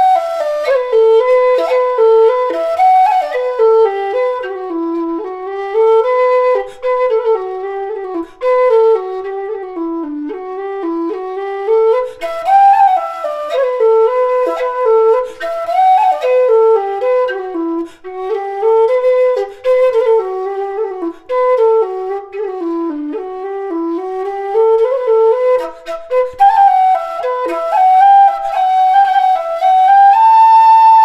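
Low whistle playing a solo folk melody, one line moving up and down in steps with slides and trills ornamenting the notes.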